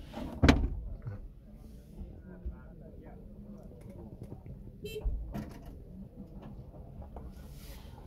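A single sharp thump about half a second in, then faint knocks and rustling as something is handled inside a small car's cabin.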